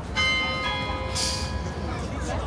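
A large bell struck twice, about half a second apart, each stroke ringing on with a cluster of clear overtones that fade toward the end, over the hum of an outdoor crowd. A short hiss cuts in a little over a second in.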